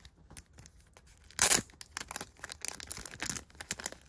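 Clear plastic shrink wrap being torn open from a pack of trading cards: one loud rip about a second and a half in, then quick crackling and crinkling of the plastic.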